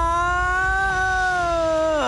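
A cartoon character's long, drawn-out yell: one held note that wavers slightly and sinks a little near the end.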